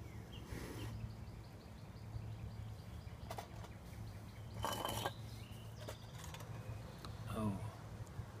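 A few light clinks and handling sounds from a steel canteen cup and its lid, the loudest a short clatter about five seconds in, over a steady low hum.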